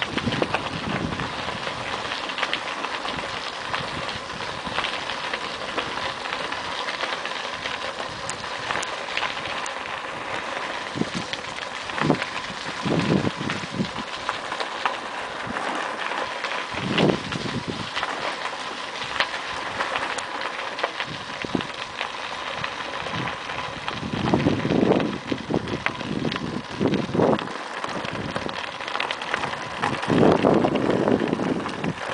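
Bicycle tyres crunching steadily over a loose gravel trail, a constant crackling rattle. There are a few louder low rumbles near the middle and again toward the end.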